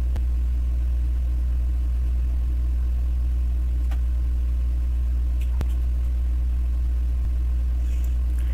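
A steady low electrical hum runs throughout, with two faint clicks about four and five and a half seconds in.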